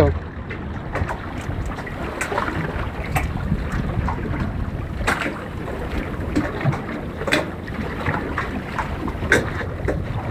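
Wind noise on the microphone over sea water slapping against a small boat's hull, broken by irregular short splashes and knocks.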